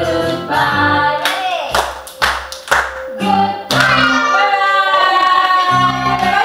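Children's action song with singing. About two seconds in the melody drops out for a few sharp claps, then the song comes back with a long held sung note.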